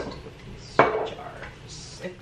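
A single sharp clink with a short ring about a second in, kitchenware knocking together: a small spice container tapped against the pot as spices are shaken in.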